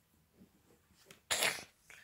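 Near silence, then a little over a second in a single short, breathy burst of noise that fades within half a second: a crash sound effect made with the mouth.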